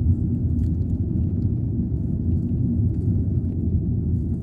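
Steady low rumble of a moving car, engine and tyres on tarmac, heard from inside the car's cabin.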